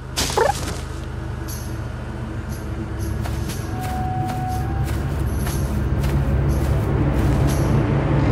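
Music with a low bass line, growing gradually louder, with scattered light clicks over it. A brief rising voice-like squeak sounds just after the start.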